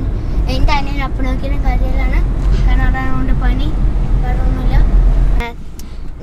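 Low rumble of a moving car heard from inside the cabin, with voices talking over it; the rumble drops away suddenly near the end.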